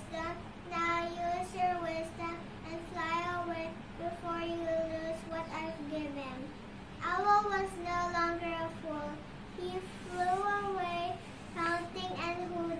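A young girl singing, with long held notes and short breaks between phrases.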